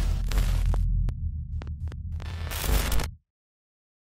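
Glitch sound effects for a logo reveal: a deep low hum with crackling static bursts and sharp clicks, stopping abruptly about three seconds in and leaving silence.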